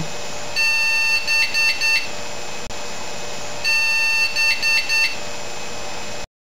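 Computer POST beep code from the motherboard's speaker: one long beep followed by three short beeps, played twice over a steady background noise. This is an error pattern, the sign that the power-on self-test has found a hardware fault.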